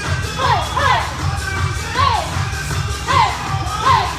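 A group of women shouting short, high calls in time with their kicks, each call falling in pitch, about five in four seconds, over workout music with a steady bass beat.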